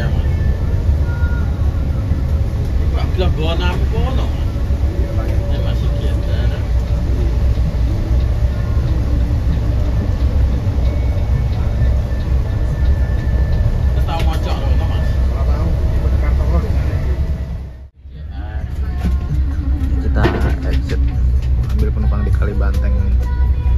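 Steady low rumble of an intercity coach's engine and tyres heard from inside the cabin while it drives, with faint voices now and then. The sound drops out briefly near the end.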